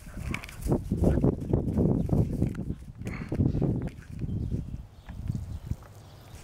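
Yellow Labrador puppy playing and rolling on grass: irregular scuffling and low thumps, easing off near the end.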